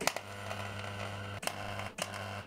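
Wire-feed (MIG) welder running an arc on a steel suspension bracket: a steady crackling sizzle over a low hum, broken off briefly about one and a half seconds in and then struck again.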